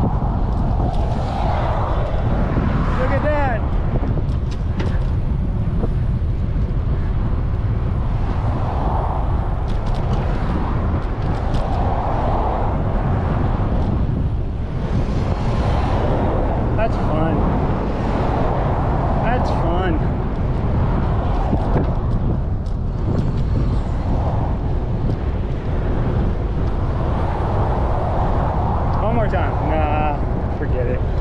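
Wind rushing over the microphone of a bicycle-mounted camera riding along a paved trail, a steady low rumble, with road traffic from the adjacent causeway mixed in.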